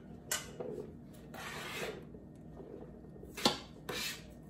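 A knife scraping chopped mushrooms off a plastic cutting board into the stainless-steel inner pot of an Instant Pot. There are a few light clicks and taps, a longer scrape about a second and a half in, and the loudest click near the end.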